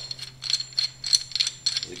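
Irregular light clicking and ratcheting of a miter saw's hold-down clamp being adjusted by hand, with a faint steady hum underneath.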